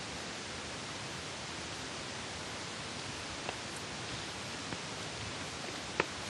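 Steady, even hiss of outdoor background noise on a phone microphone, with a few faint ticks of footsteps on pavement and a small knock at the very end.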